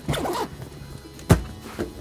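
A packed wheeled camera backpack with a tripod strapped on is handled and lifted on a wooden table: light rustling, then one sharp thump just over a second in, over background music.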